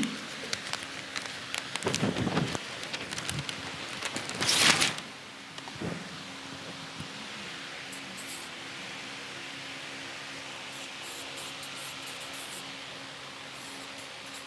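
Flip-chart paper being handled: crackling and ticks, then a loud paper rustle about four and a half seconds in as a sheet is turned over. Later come a few faint scratchy strokes of a marker writing on the fresh page.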